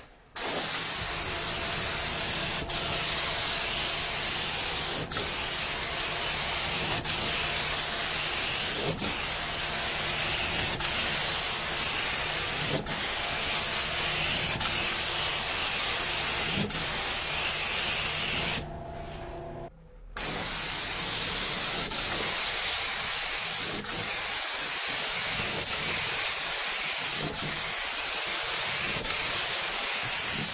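Pressure PPIG001 HVLP gravity-feed spray gun with a 1.3 mm nozzle spraying paint: a steady hiss of atomising air and paint. The hiss stops for about a second and a half roughly two-thirds of the way through, then carries on.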